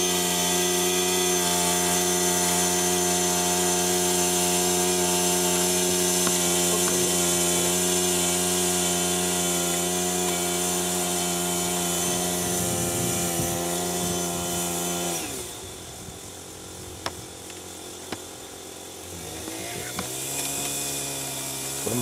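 Small 15 cc four-stroke engine of a 1:8 scale model BAT tracked vehicle running at steady high revs. About fifteen seconds in it drops in pitch and level as it throttles back, there are two sharp clicks, and it picks up again near the end.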